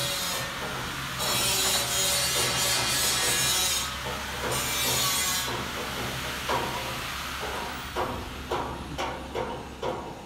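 Hydraulic car parking lift's power unit running with a steady low hum and a hissing, rasping noise over it for the first five seconds or so. From about six and a half seconds on come a series of sharp clicks and knocks.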